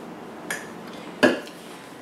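Kitchen utensils clinking twice, about three-quarters of a second apart, the second knock louder.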